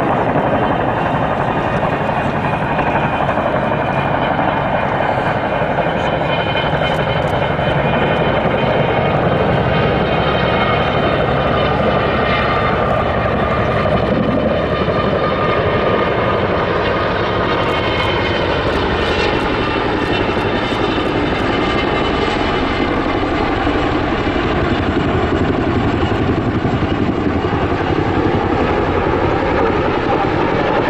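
Kawasaki-Boeing CH-47J Chinook tandem-rotor helicopter flying overhead with a water bucket slung beneath, its two rotors chopping steadily over the high whine of its twin turboshaft engines. The sound stays loud and even throughout.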